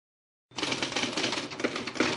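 Film projector clatter: a fast, even run of mechanical clicks, the classic sound effect laid under a film-leader countdown, starting about half a second in.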